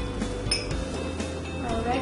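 A single light clink of a small glass prep bowl about half a second in, over faint background music.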